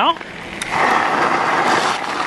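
Asomtom RV3 e-bike braking to a stop on a gravel road: a steady, rough crunch of the tyres rolling over gravel that starts about half a second in.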